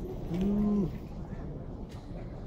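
Murmur of a walking crowd, with one short, low, held voice-like call of about half a second a few tenths of a second in, its pitch rising at the start and dropping off at the end.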